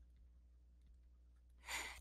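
Near silence with a faint low hum; near the end, a short breath in just before speech resumes.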